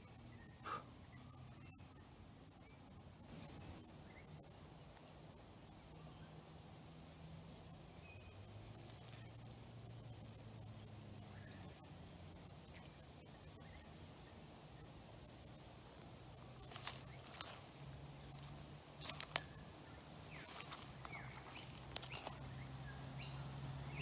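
Quiet outdoor ambience: faint high-pitched chirps repeating every second or two over a low, steady distant hum, with a few soft clicks in the last third.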